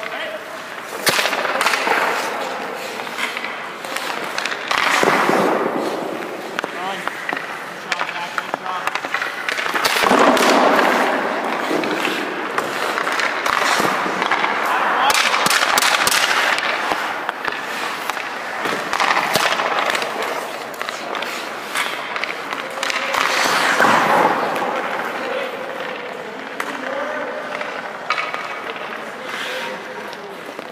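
Hockey skate blades scraping and carving on rink ice in repeated swells, with sharp clicks and cracks of sticks and pucks striking the ice and the goalie's gear.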